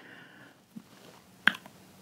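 Faint mouth sounds of a man savouring a sip of hot chocolate, ending in one short lip smack about one and a half seconds in.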